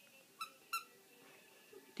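Sweep glove puppet's squeaker voice: two short, high squeaks in quick succession, the puppet's 'reply' to a question.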